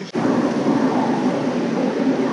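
Steady, dense rumbling noise that cuts in suddenly just after the start, the ambient rush of an airport corridor picked up by a handheld camera on the move.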